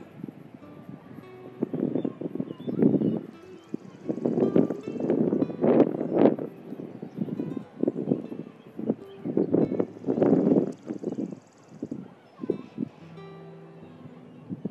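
Pencil scratching across sketchbook paper in irregular shading strokes, each about half a second to a second long, over faint background music.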